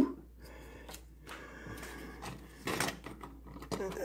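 Torn cardboard trading cards being handled on a playmat: faint rustling and scraping with small clicks, and one louder rustle a little under three seconds in.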